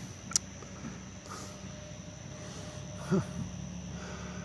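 Low outdoor background hum with a faint steady high-pitched whine, broken by one sharp click shortly after the start. A man gives a short "huh" near the end.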